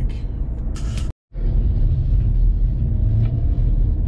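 Road and engine noise inside a moving car's cabin, a steady low rumble. It drops out abruptly for a moment about a second in, then resumes.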